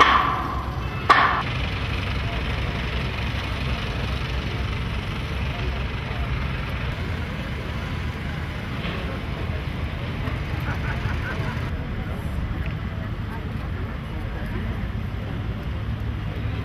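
Two sharp metallic clanks on structural steel near the start, each with a brief ring, followed by a steady low rumble of construction-site noise.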